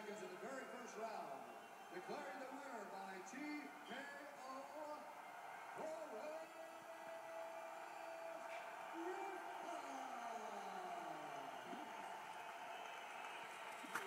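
Faint television broadcast sound heard through the TV's speaker: a man's voice making the ring announcement over steady arena crowd noise.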